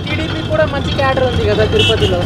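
A man talking over a steady low rumble of road traffic.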